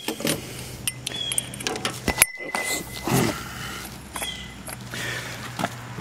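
Scattered light metallic clicks and clinks of small carburetor parts, the bowl nuts and float bowls, being handled and set down, over a low steady hum.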